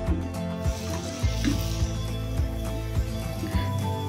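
Background music with a steady beat, over faint sizzling as a thick mushroom masala is stirred in the pot.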